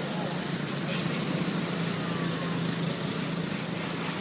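A steady low motor hum over outdoor background noise.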